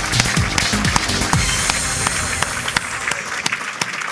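Audience applauding over music, with dense irregular clapping throughout.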